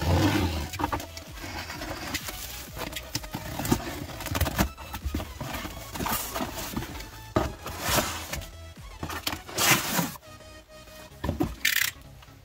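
Plastic stretch wrap being pierced with a pen and ripped off a box, a run of rips and rustles, then cardboard box flaps being pulled open, with background music underneath.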